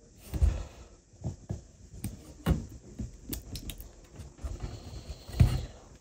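Plastic filament spool being pressed and turned on a coil of filament, giving scattered light clicks and knocks, with the loudest knock about five seconds in.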